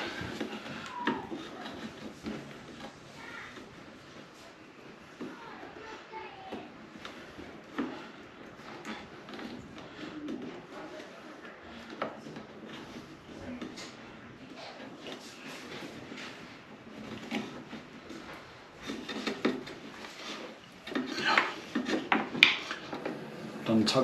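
Hands working electrical cable cores into small plastic inline splice connectors: a low handling rustle with scattered light plastic clicks, busier and louder for the last few seconds.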